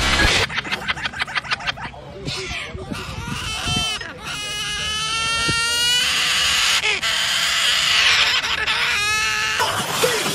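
White cockatoos calling: a fast chattering burst, then a long drawn-out squawk, harsh screeching, and a short falling call near the end.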